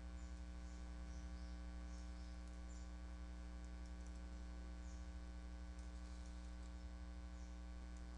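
Steady electrical mains hum with a ladder of harmonics, faint and unchanging, with a few faint scattered high ticks.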